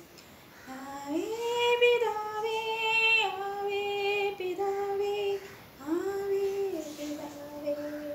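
A woman singing a devotional song unaccompanied, holding long notes and scooping up into a couple of them. She comes in about a second in after a brief breath, with a short break a little past halfway.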